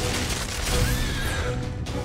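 Dramatic background music with a short whinny from an animated horse-like creature, a gliding call about a second in.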